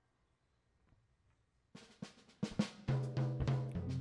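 Near silence for nearly two seconds, then a live rock band's drum kit comes in with a run of sharp hits, joined about a second later by held bass and guitar notes as a song begins.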